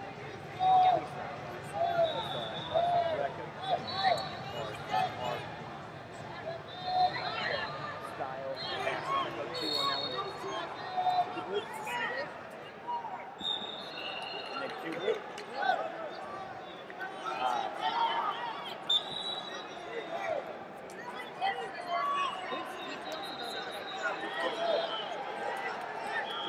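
Wrestling arena ambience: voices shouting from around the mats, with sudden thuds and scattered short high-pitched tones.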